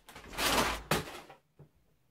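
Plastic chip bag crinkling as it is shaken hard for about half a second, then a sharp knock about a second in as it drops to the carpet, fading to quiet.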